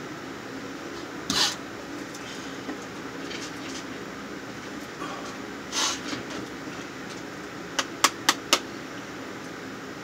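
Steady room hum, with two short hissing bursts and then four sharp clicks in quick succession about eight seconds in.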